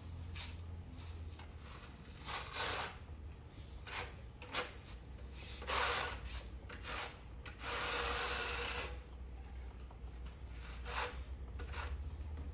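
Irregular scraping strokes of a trowel spreading tile adhesive across the back of a ceramic tile, most of them short, with one longer drawn-out scrape about eight seconds in, over a low steady hum.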